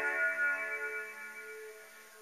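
A guitar chord left ringing between sung lines, its notes holding steady and slowly dying away.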